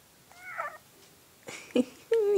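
A baby's short high-pitched coo that rises and falls in pitch, about a third of a second in. A louder, brief vocal sound follows near the end.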